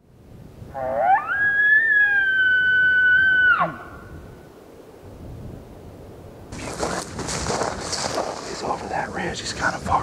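A bull elk bugle: one call that rises steeply into a high whistle, is held for about two seconds and then breaks off. About six and a half seconds in, a rustling noise starts and keeps going.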